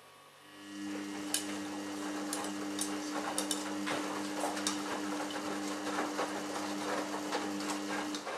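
Samsung Ecobubble WF1804WPU front-loading washing machine drum tumbling wet laundry during the wash: about half a second in the motor starts with a steady hum, the load and water slosh with small knocks throughout, and it stops right at the end.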